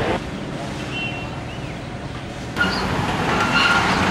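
Street ambience with road traffic noise, growing louder about two and a half seconds in, with faint voices in the background.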